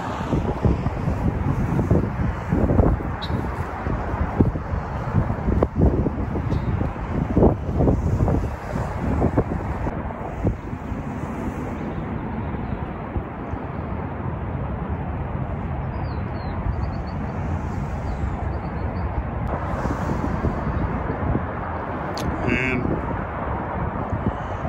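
Wind rumbling on the microphone, gusty and uneven for the first half and steadier after, with a few short high bird chirps in the second half.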